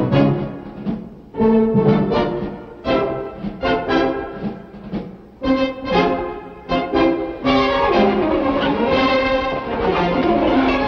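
Orchestral film score with brass: a series of short accented chords, each dying away, then a loud sustained passage from about three-quarters of the way in.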